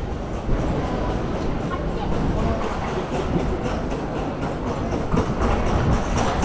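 Busy pedestrian street: a steady low rumble with many small clicks and taps, and people talking in the crowd.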